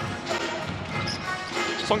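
Basketball arena sound: crowd noise and arena music over a basketball being dribbled on the hardwood court.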